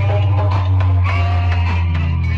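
Loud music played through a roadshow DJ sound system's horn loudspeakers: a heavy, steady bass with a melody over it.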